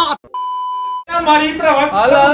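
A single steady electronic censor bleep, a flat high tone lasting under a second, cut in between bursts of shouted speech.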